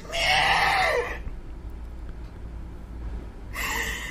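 A shrill, wailing scream, about a second long, followed by a low hum, with a second shorter cry near the end.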